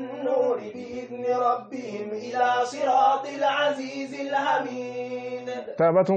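A man's voice chanting a repeated phrase in a sing-song rhythm, a syllable about every half second, over a steady low hum.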